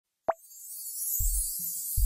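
Intro jingle with sound effects: a short sharp pop, then a high airy whoosh that swells up, with a deep bass beat coming in about halfway through.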